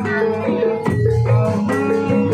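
Jaran kepang dance accompaniment music: a short melodic figure of struck or plucked notes repeating over a steady bass line, punctuated by percussion strikes.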